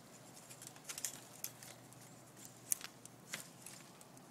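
Faint scattered clicks and rustling from a grapevine cane being handled and bent down along a trellis wire.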